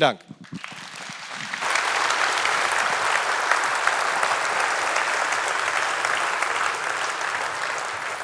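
Large audience applauding, the clapping building over the first second and a half, holding steady, then starting to thin out near the end.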